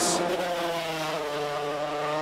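A 250cc two-stroke racing motorcycle engine held at high revs as it goes past. It is one steady note that steps down in pitch about halfway through.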